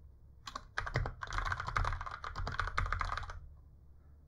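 Fast typing on a computer keyboard: a quick run of keystrokes that starts about half a second in and stops a little after three seconds.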